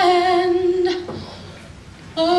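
A singer holds one long, steady note in a live acoustic medley; it ends about a second in, leaving a brief lull before the singing picks up again.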